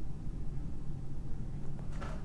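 A steady low background rumble, with no distinct event.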